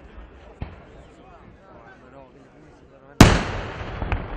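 Daytime firework burst high in the air: a faint pop about half a second in, then one very loud bang near the end that dies away in a trailing echo. Crowd chatter runs underneath.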